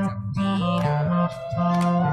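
Rock band music: a bass guitar stepping between notes under guitars, with a long held note coming in about half a second in.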